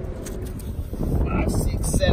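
Steady low rumble of wind on the microphone, with voices coming in during the second half.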